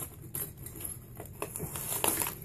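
Plastic fishing-lure packaging being handled and worked open, with irregular small crinkles and clicks.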